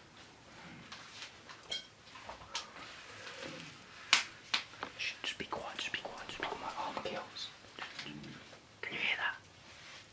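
A man whispering close to the microphone, with a few short sharp clicks.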